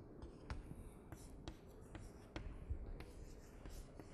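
Chalk writing on a blackboard: a faint run of short taps and scrapes as arrows and letters are drawn.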